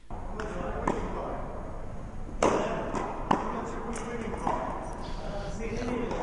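Tennis ball being struck and bouncing on an indoor court: a handful of sharp pops and knocks, the loudest about two and a half seconds in, over the hum and echo of the hall.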